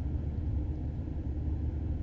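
Steady low rumble of a car travelling along a highway, heard from inside the cabin: road and engine noise.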